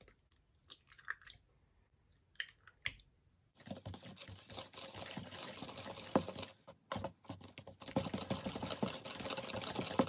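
A few faint clicks as an egg is cracked over a plastic mixing bowl, then, from about three and a half seconds in, a hand whisk beating cake batter in the plastic bowl: a fast, continuous scraping and clicking.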